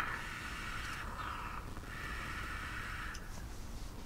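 A long draw on a mechanical mod with a rebuildable dripping atomiser, giving a steady airy hiss of air pulled through its restricted direct-lung airflow. The hiss stops about three seconds in.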